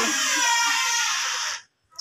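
A young child's drawn-out, high-pitched vocal cry, falling slightly in pitch, that cuts off abruptly about one and a half seconds in.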